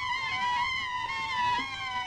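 Soundtrack music: several held, slightly wavering high tones sounding together, one of them slowly falling in pitch.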